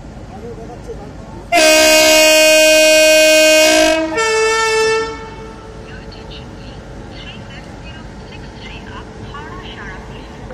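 A locomotive air horn sounds loudly as the train approaches. It gives a long blast of about two and a half seconds on two notes at once, then a shorter blast of about a second on a single lower note. Around the blasts is the steady background noise of the station, with faint voices.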